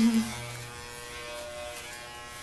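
Electric hair clippers running with a steady buzz during a haircut. A short laugh comes at the very start.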